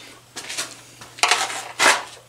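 A metal screwdriver scraping and prying at the anode rod access on top of an electric water heater, chipping away the packing over the rod's nut. It makes three short, scratchy scrapes, the last one the loudest.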